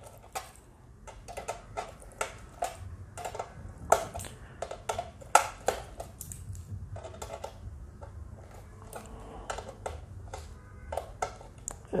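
Metal multitool bracelet driving a small screw back into a sheet-metal box with its Phillips screwdriver bit: irregular light metallic clicks and ticks as the links rattle and the bit turns in the screw head, a few sharper clicks among them.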